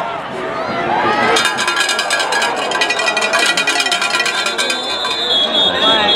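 Football crowd noise that swells about a second in, with a dense rapid clatter over it, then a referee's whistle blowing a steady high note near the end as the play is whistled dead.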